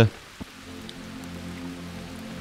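Ambient background music of soft, steady held low notes, mixed with an even hiss like rain or running water.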